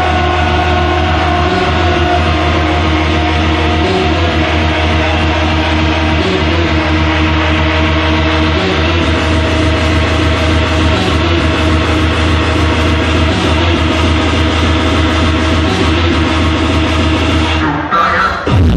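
Early hardcore track played loud through a club sound system, with a heavy, steady low bass under held synth tones. The sound drops out briefly near the end before the music changes.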